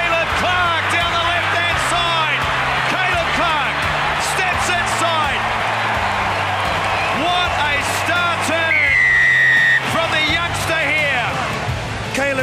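Stadium crowd cheering and whooping over background music with a steady, stepping bass line. A long, high, steady whistle sounds for about a second near nine seconds in.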